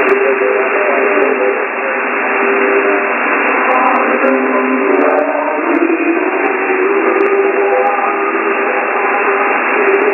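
Shortwave radio station WJHR on 15555 kHz, received in upper-sideband mode on a software-defined radio. Heavy steady static fills the sound, with faint wavering tones of the station's programme underneath, and everything cuts off sharply above about 3 kHz.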